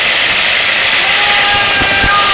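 Tomatoes and onions sizzling steadily in hot oil in an aluminium pot, with a wooden spoon stirring and knocking against the pot.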